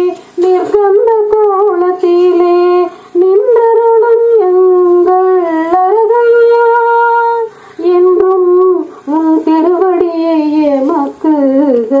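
A woman singing a Tamil devotional song solo and unaccompanied, in long held notes with melodic turns, breaking off briefly between phrases.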